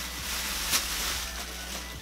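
Thin plastic processing cap crinkling as it is handled, with one sharper crackle a little under a second in, over a steady low hum.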